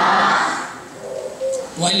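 A man's voice through a microphone in a reverberant hall: a breathy trailing-off at the start, a short pause with low hums, then speech starting again near the end.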